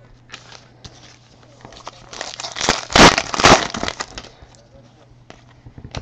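Foil wrapper of a 2015 Panini Prizm football card pack crinkling as it is handled and opened. The crinkle builds about two seconds in, is loudest in the middle and dies away well before the end, with a few light clicks before it.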